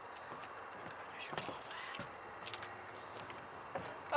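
Faint outdoor background with a few soft ticks and knocks, scattered through the quiet rather than in a rhythm.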